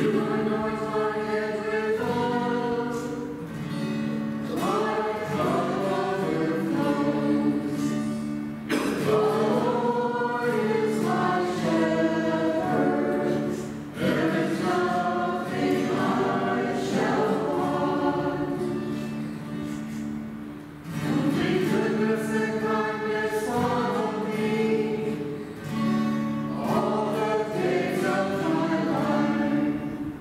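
Church choir singing a hymn over sustained accompaniment chords, in phrases with short breaths between them.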